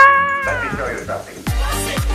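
A woman's voice holding a long, slowly falling final syllable of a sign-off, fading out. About one and a half seconds in, electronic dance music starts, with a steady kick drum about twice a second.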